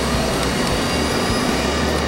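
A fan running steadily: an even rushing noise with a low hum underneath.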